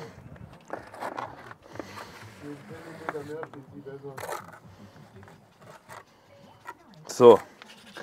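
Mason's trowel scraping through and knocking against the mortar bed at the base of freshly set stair blocks, cutting away the excess mortar, with a few sharp knocks.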